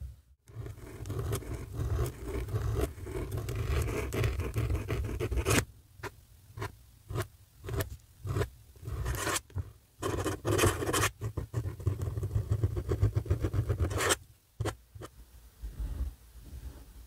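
Zebra G flex calligraphy nib in a fountain pen scratching across paper as it writes. A continuous stretch of writing comes first, then a run of short separate strokes, each about half a second, with brief pauses between them.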